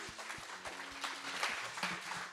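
A congregation clapping as a worship song ends, many scattered claps, while the band's last sustained note fades out at the start.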